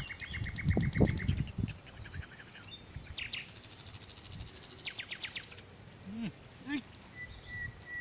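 Small birds calling in rapid, evenly pulsed trills, a lower one in the first second and a half and a higher one a few seconds later. A brief low thump about a second in.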